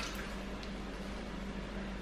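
Kitchen tap running steadily: a soft, even rush of water with a faint low hum beneath it.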